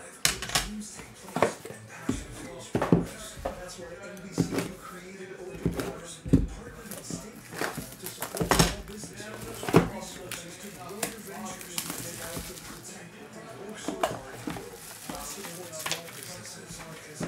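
Trading-card boxes being handled and a plastic-wrapped box unwrapped on a table: irregular knocks and clicks of boxes set down and moved, with crinkling plastic wrap.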